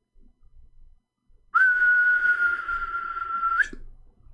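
A person whistling one long, steady note of about two seconds, starting about one and a half seconds in and rising slightly just as it stops.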